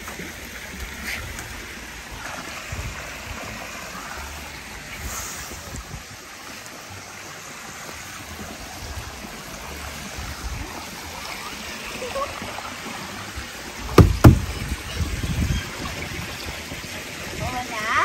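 Wind buffeting the microphone, a steady rushing noise with low rumbles, broken about fourteen seconds in by two sharp, loud thumps close together.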